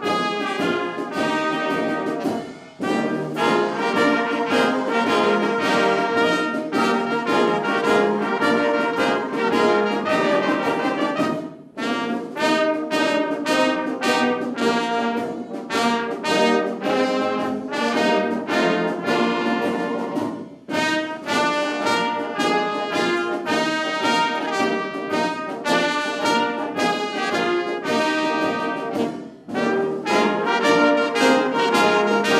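Live wind band of clarinets, flutes, trumpets, horns and tuba playing a piece together, with a short break between phrases about every nine seconds.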